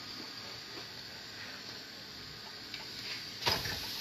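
Faint, steady hiss of a buttered paratha cooking on a hot iron tawa over a gas flame, with a few light ticks. A short, louder rush of noise comes about three and a half seconds in.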